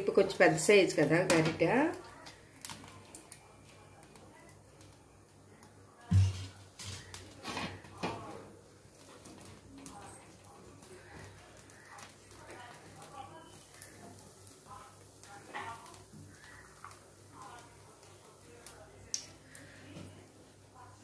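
A woman's voice for the first two seconds, then a single sharp knock of a kitchen utensil about six seconds in, followed by a few light clicks and faint distant voices over a low steady hum.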